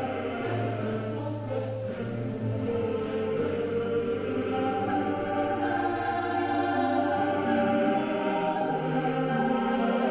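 Choir music: voices singing slow, long held chords over a low sustained note that fades out near the end.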